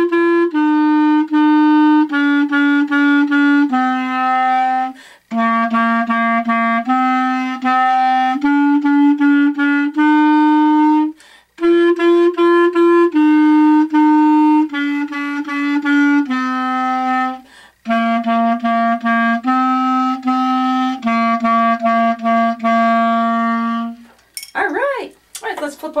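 Clarinet playing a simple beginner melody that starts on G, a mix of quick repeated note pairs and longer held notes, in four phrases with short breaths between them. The playing stops about two seconds before the end, and a voice follows.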